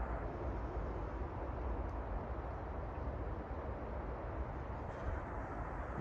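Steady outdoor background noise: a low rumble under an even hiss, with no distinct events.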